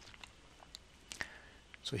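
A quiet pause in a man's speech holding a few faint clicks, the clearest about a second in. He starts speaking again right at the end.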